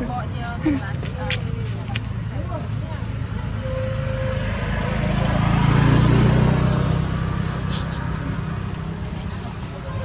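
A motor vehicle driving past: a low rumble that swells to a peak about six seconds in, then fades away.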